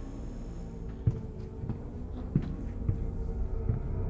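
Slow footsteps, about five low, soft steps, over a steady low drone that builds slightly toward the end.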